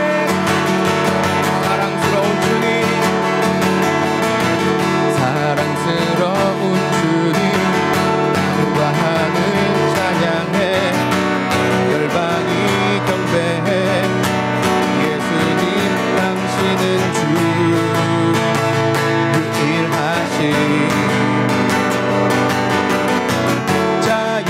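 An acoustic guitar strummed steadily, accompanying a man singing a contemporary worship song with English and Korean lyrics.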